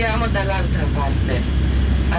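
Tour coach engine and road noise heard inside the cabin: a steady low drone, with a person talking over it.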